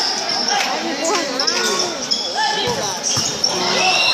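A futsal ball striking the court a few times, the hits clustered about three seconds in, over the voices of spectators.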